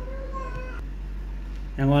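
A short, faint, high-pitched call lasting under a second, over a steady low hum; loud speech starts near the end.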